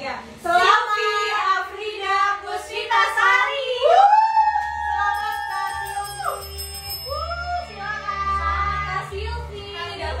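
Women's voices, excited talk that turns into a long sung note gliding up and held for about two seconds, then a shorter sung note, with a low throbbing underneath in the second half.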